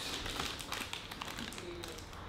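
Plastic sweet packets (Squashies) crinkling and rustling as they are handled, a run of small crackling clicks.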